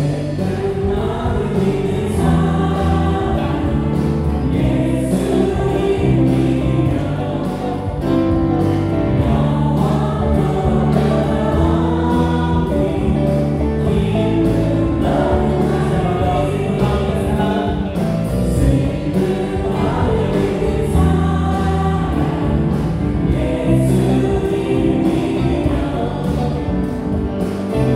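Live praise band playing a worship song, with electric guitar, bass guitar, keyboards and drums under a group of voices singing together.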